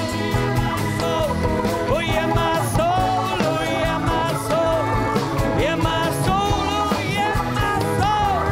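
Live rock band music: drums, acoustic and electric guitars, keyboards and a rubboard playing a passage without lyrics, with a lead line that bends up and down in pitch over a steady beat.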